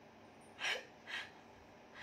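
A woman's two short breathy laughs, about half a second apart, over faint room tone.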